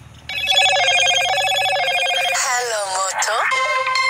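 An electronic tune starts abruptly and loud: a fast warbling ring of high tones, then swooping glides up and down about halfway through, then steady held tones, like a phone ringtone.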